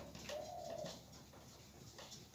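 A dove cooing faintly: one held, steady coo of about half a second, starting about a third of a second in.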